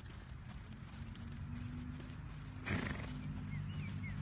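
A horse trotting on arena sand, its hoofbeats going steadily. About two and a half seconds in comes one loud, short snort from the horse.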